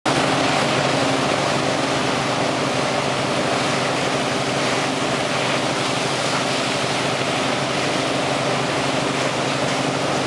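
Steady drone of a boat's engine running at wakesurfing speed, mixed with the rush of the churning wake behind it.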